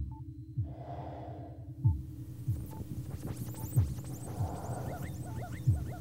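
Film sound design: a heartbeat-like double thud repeating about every two seconds over a low steady hum. High electronic chirps and whistling glides join about halfway through.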